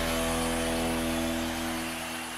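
Sports programme's intro jingle ending on a held chord over a noisy wash, beginning to fade out near the end.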